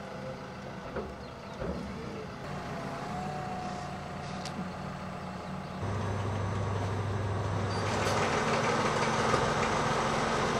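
Farm tractor's diesel engine running steadily. About six seconds in the sound jumps abruptly louder, and it grows a little louder again near the end.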